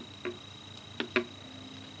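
Scientific calculator keys being pressed: four short plastic clicks in two pairs, one pair near the start and another about a second in.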